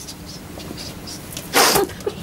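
A woman's single short, loud breathy outburst through nose and mouth, about one and a half seconds in, against quiet room tone.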